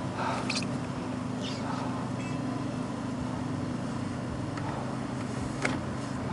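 Motor vehicle engine idling with a steady low hum, with a couple of brief clicks.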